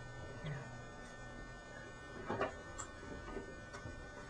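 Faint steady electrical hum or buzz, with a brief low murmur about half a second in and a short, slightly louder sound and a few soft clicks in the second half.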